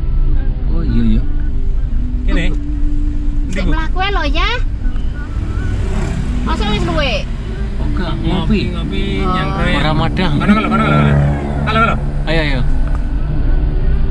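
Steady low rumble of a car driving, heard from inside the cabin, with a person's voice over it.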